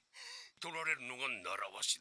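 A man's voice speaking quietly, low in the mix: the anime episode's dialogue playing under the reaction, about half a second in until just before the end.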